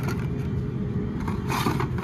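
A hand rummaging through carded Hot Wheels cars in a cardboard display bin: blister packs scraping and rustling against the cardboard, loudest in the last half-second. A steady low rumble runs underneath.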